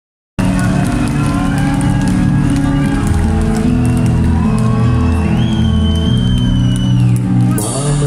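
Live rock band with electric guitars and keyboards playing loudly, with a voice over the music. It cuts in sharply about half a second in.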